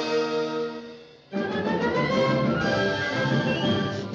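Orchestral cartoon score. A held chord ends the title music and fades out about a second in, then a new orchestral passage with strings and brass starts abruptly.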